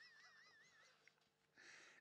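Near silence: room tone, with a faint high-pitched warbling sound during the first second.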